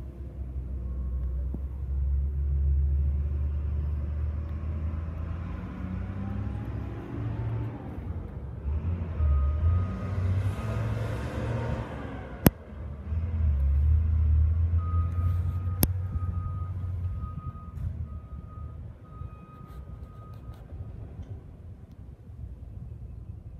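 Low rumble of a motor vehicle running nearby, swelling and fading, with two sharp clicks in the middle. In the second half a short beep repeats about once a second.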